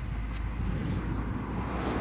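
Steady low rumble of outdoor background noise.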